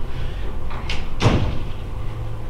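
A single dull thud about a second and a quarter in, preceded by a lighter knock, over a steady low room hum.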